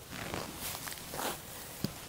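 Rustling of clothing and tall grass as a straw hat is taken off and laid in the grass: a few soft swishes, then a small tick near the end.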